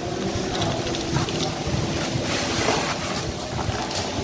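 Rustling and crinkling of parcel packaging (a plastic courier bag, torn corrugated cardboard and bubble wrap) as it is handled, over a steady low machine hum.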